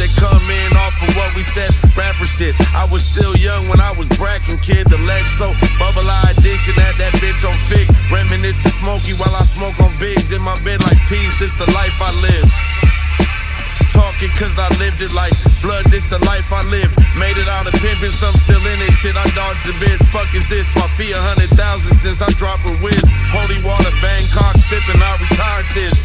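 Hip-hop track: rapping over a beat with heavy bass and steady drum hits.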